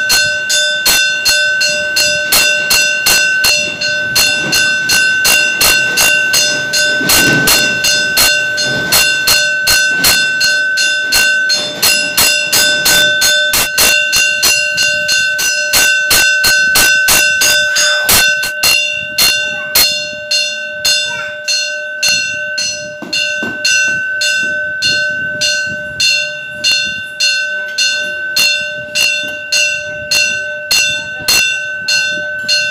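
Metal temple bell struck over and over at an even pace, about two strokes a second, each stroke adding to a continuous ringing. The ringing gets somewhat softer and less bright about two thirds of the way through.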